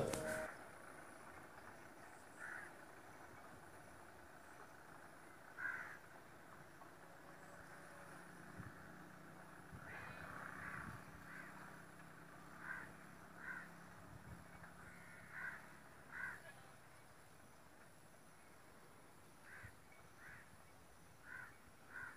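Crows cawing faintly, short separate caws every second or few, some in quick pairs.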